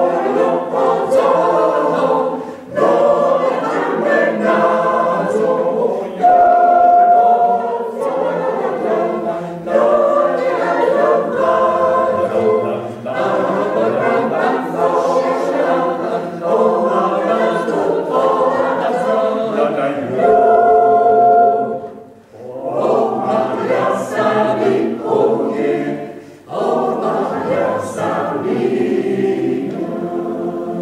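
Mixed choir of men's and women's voices singing unaccompanied in Vaudois patois, in phrases separated by short pauses for breath.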